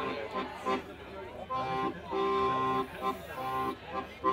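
A piano accordion plays the introduction to the song: a run of held chords, each cut off by a short gap.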